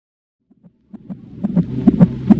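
Near silence for about a second, then a heartbeat sound effect fades in: a low hum with a steady throbbing pulse.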